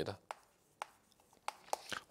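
Chalk tapping and scraping on a blackboard as characters are written: a handful of short, sharp taps, the last few coming close together near the end.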